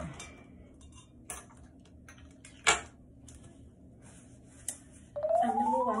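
Scattered small clicks and light clinks of makeup items being handled, with one sharp click just before the middle. Near the end a tone rises and settles into music.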